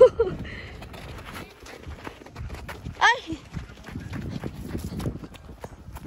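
Footsteps and ball kicks crunching on a dry dirt field, many short scuffs and taps, with one short high-pitched shout about three seconds in.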